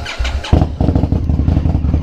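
Cold start of a 2018 Indian Scout Bobber's 1133 cc V-twin: a brief crank, catching about half a second in, then running at a steady, pulsing idle.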